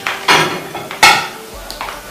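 Metal kitchenware being handled at a counter: two sharp clanks, the first a quarter-second in and the second about a second in, then a lighter knock near the end.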